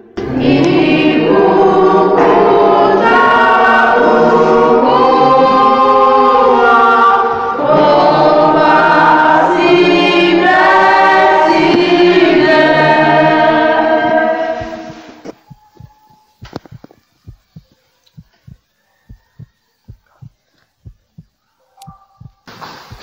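A church choir singing together, many voices, stopping about 15 seconds in. It is followed by a quieter run of short, evenly spaced ticks, two or three a second.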